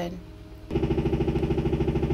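A steady mechanical hum with a fast, even pulse starts abruptly a little under a second in and keeps running, like a small motor or appliance.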